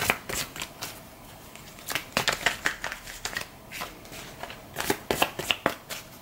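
A deck of tarot cards shuffled by hand: quick runs of crisp card flicks and snaps in three spells, with short pauses between them.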